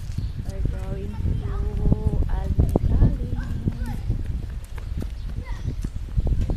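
Footsteps on stone paving, a string of irregular knocks, over a constant low rumble of wind on the microphone.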